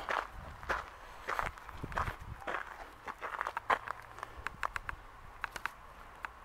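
Footsteps of a person walking along a path at an unhurried pace, a step roughly every half second or so, with lighter clicks and rustles in the second half.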